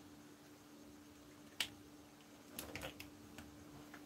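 Whiteboard marker tapping and squeaking against the board as letters are written: one sharp click about one and a half seconds in, then a quick cluster of clicks near the three-second mark and a few lighter ones after, over a faint steady hum.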